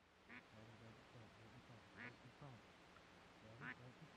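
Faint duck quacking: a run of short quacks, with three sharper calls spread across the few seconds.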